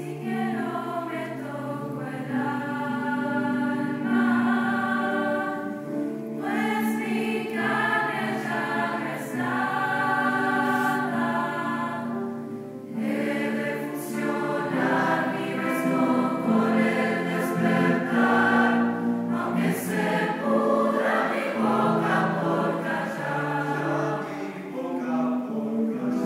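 A young choir singing in several parts, holding sustained chords over steady low notes, with short breaks between phrases about six and thirteen seconds in.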